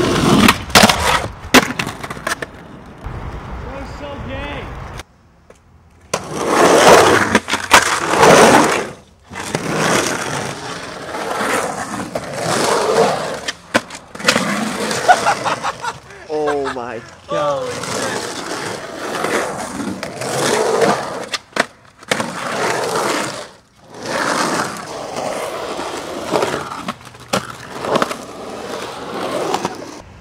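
Skateboarding across several cut-together clips: wheels rolling on rough concrete with sharp clacks and smacks of the board hitting ledges and ground. About sixteen seconds in, a man laughs loudly.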